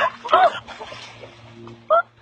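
A dog giving short, high yelps: the loudest about half a second in, a fainter one soon after, and another at the end.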